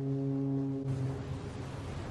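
A ship's horn sounding one low, steady blast that fades away in the second half.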